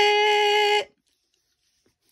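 A woman's voice holding one long, steady high note, the drawn-out end of "Who is it?" in a sing-song granny voice; it stops a little under a second in.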